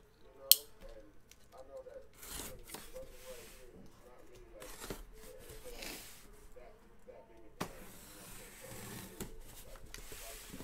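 Packing tape being cut and torn as a sealed cardboard shipping case is opened, in several scratchy rips, with one sharp click about half a second in. A faint voice murmurs underneath.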